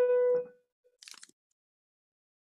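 A held keyboard note, steady in pitch, dying away about half a second in, followed by a faint short rustle about a second in.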